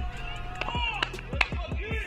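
Outdoor tennis court sound between points: a few distant voices calling out, and several sharp short knocks in the second half.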